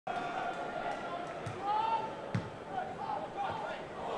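Football match sound from pitch level: voices calling out over the stadium crowd, and two dull thuds of the ball being played, about a third of the way in and just past halfway, the second one louder.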